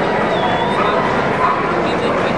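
Crowd murmur and chatter echoing in a large hall, with a brief high whine about half a second in.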